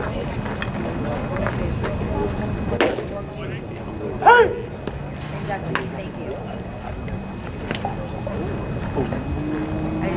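Ballpark crowd chatter, broken a little before three seconds in by a sharp pop of a baseball into the catcher's mitt. About a second and a half later comes a loud, short shouted call, the loudest sound, its pitch rising and falling.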